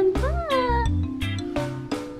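A single cat meow, rising then falling in pitch, over background music with a regular low beat.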